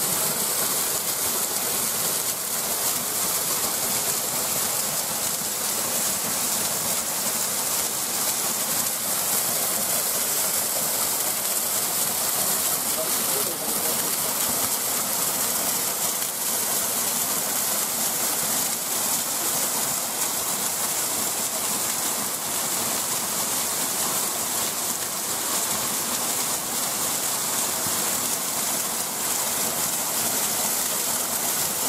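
Small waterfall pouring down a mossy rock face, a steady, unbroken rush of falling water.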